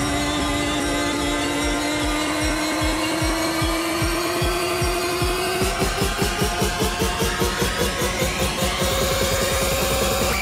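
Electronic dance music from a live DJ mix on Pioneer CDJ-3000 players and a DJM-A9 mixer, in a build-up: a held synth tone slowly rises in pitch over a steady kick beat. In the last few seconds the beat tightens into a faster roll and a rising sweep climbs above it.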